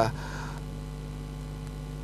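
Steady electrical mains hum in the audio: a low buzz made of several steady tones, with no other sound over it.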